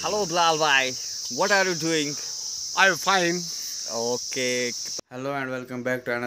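Men talking over a steady, high-pitched insect drone. The drone cuts off abruptly about five seconds in, leaving only speech.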